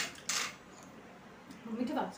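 Metal forks clinking and scraping on serving plates while food is dished out: a sharp clink right at the start, then a short scrape about a third of a second in.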